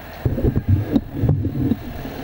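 Handling noise on a stage microphone: a quick run of dull thumps and low rumbling as its stand is gripped and adjusted, starting about a quarter second in.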